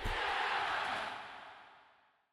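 Stadium crowd cheering, starting suddenly and then fading out over the second half.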